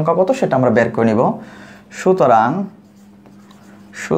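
A man speaking Bengali, one phrase and then a drawn-out syllable, with faint scratching of a pen writing in the pauses. A steady low hum runs underneath.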